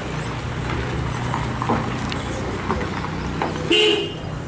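A vehicle engine running nearby as a steady low hum, with scattered light clicks, and a short, loud vehicle horn toot near the end.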